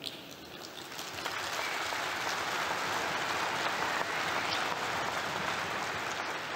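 Audience applauding, swelling over the first two seconds and then holding steady.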